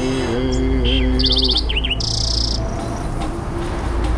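Recorded birdsong laid into a relaxation music track: a quick trill of repeated high notes about a second in, a couple of short falling chirps, then a buzzy call. Under it a held, slightly wavering musical tone over a low hum fades out partway through.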